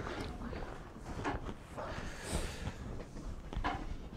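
Quiet room tone with a few light knocks and a brief rustle.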